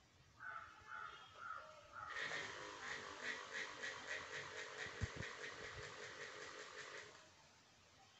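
Small battery-powered electric motors with propellers on a homemade X-shaped frame, faintly running for about five seconds with a pulsing beat of roughly four a second, after a few short tones near the start.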